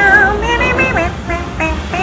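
A woman's voice singing a melodic line over backing music, with a steady low rumble underneath.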